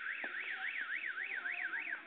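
Electronic siren-like alarm tone warbling quickly up and down, about four sweeps a second, then stopping abruptly.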